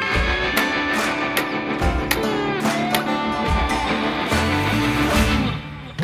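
Background music led by guitar, with a short dip in loudness near the end.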